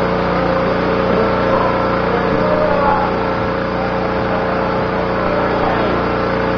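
A loud, steady mechanical hum that does not change, under faint voices.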